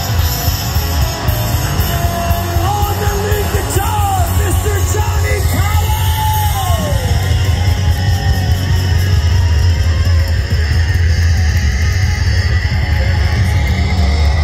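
Live rock band playing loud, with electric guitars, bass and drums. A drawn-out yelled vocal line rises and falls from about three to seven seconds in.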